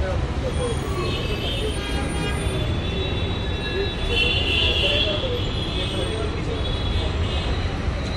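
Steady urban road traffic rumble, with people talking in the background and a vehicle horn sounding briefly about four seconds in.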